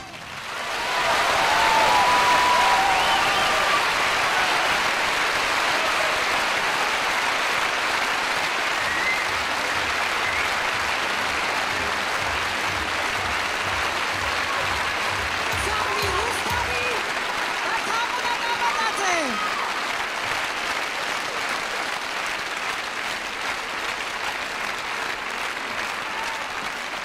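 Theatre audience applauding after the music stops, swelling within the first second or two and holding, with a few shouts from the crowd over it.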